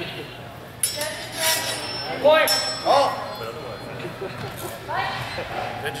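Voices and laughter, with a referee calling "Fighters". About a second in come a sharp clink or two of steel longswords, with a thin high ring.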